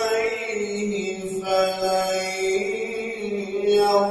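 A man reciting the Quran in the melodic tajwid style, drawing out one long ornamented vowel that wavers and steps to a new pitch about a second and a half in and again near the end.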